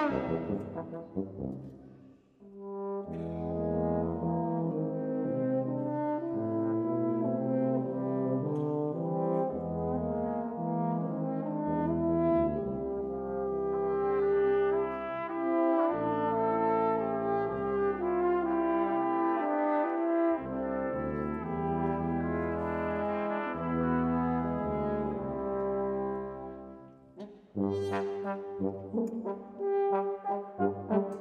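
Brass ensemble with a symphonic wind band playing. After a short lull, sustained held chords come in about three seconds in, low brass underneath, and near the end the music turns to short, repeated accented notes.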